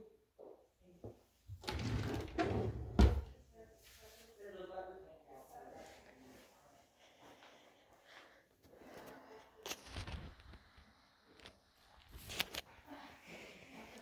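A few knocks and thuds, with the loudest a sharp knock about three seconds in and single knocks near ten and twelve seconds. Faint voices talk in the background.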